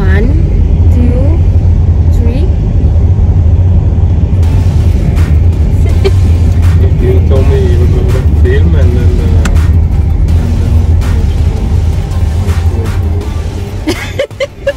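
Steady low rumble of a car's cabin while driving, road and engine noise, with indistinct voices and music over it.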